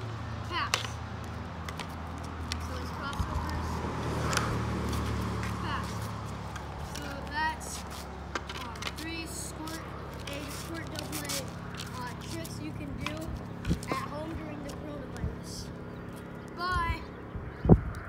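Hockey sticks tapping and slapping pucks and a ball on an asphalt driveway during passing and stickhandling: a scattered series of sharp clacks, with one loud crack near the end.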